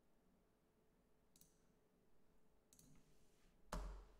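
Near silence broken by three short computer mouse clicks, two faint ones and a louder one with a low thump near the end.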